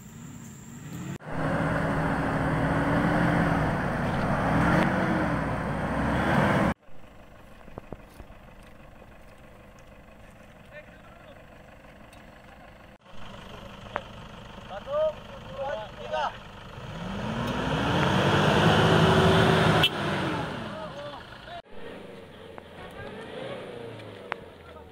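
Engine of a vehicle stuck in deep mud revving hard, twice, the pitch climbing and falling back as it strains to drive out. A few short shouts come in between.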